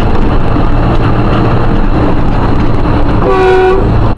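Steady engine and road noise inside a moving car's cabin, recorded by a dashcam. Near the end a vehicle horn sounds once for about half a second.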